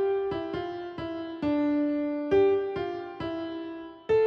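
Soft piano music: a slow melody of single struck notes that die away, with one note held for about a second in the middle.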